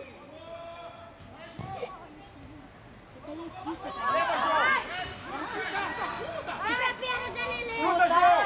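Several voices, high like children's, shouting and calling over one another during a football game. Fairly quiet at first, louder from about four seconds in and again near the end.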